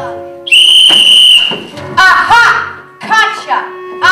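A single loud whistle blast: one steady, shrill note lasting about a second, starting about half a second in. After it come excited voices.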